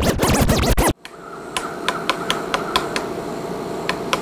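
A record-scratch sound effect, about a second long, abruptly cutting off the music, followed by a steady hiss with scattered sharp clicks.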